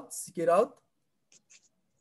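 A voice speaking a few syllables of lecture speech at the start, then a pause with a few faint soft ticks.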